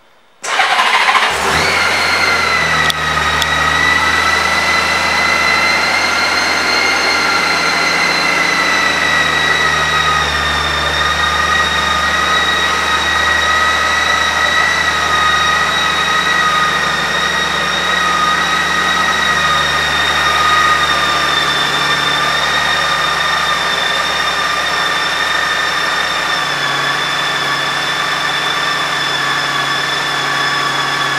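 2008 Honda Gold Wing's 1.8-litre flat-six engine started with a brief crank and catch about half a second in, then idling steadily. The idle carries a high whine whose pitch drifts slowly lower.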